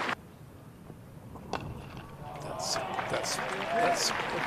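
A single sharp crack of a cricket bat striking the ball about a second and a half in, over low ground noise, followed by crowd noise building as the shot runs away.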